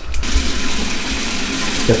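Bathroom sink tap running: a steady hiss of water that starts abruptly a moment in.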